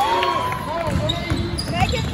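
A basketball being dribbled on a hardwood gym floor, bouncing about twice a second, with players' and spectators' voices over it.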